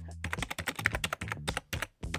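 Keyboard typing sound effect: a rapid run of short keystroke clicks, with brief pauses, as text is typed out on screen.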